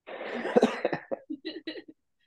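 A man laughing: a breathy burst for about a second, then a run of short, quick pulses that trail off.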